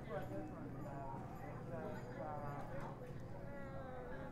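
Indistinct talking: a high voice speaking, its pitch rising and falling, over a steady low hum.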